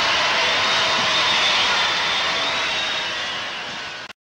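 Audience applauding at the end of the song, fading out near the end.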